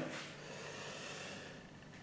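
A faint breathy hiss close to the microphone, a person breathing out in a pause between words, dying away towards the end.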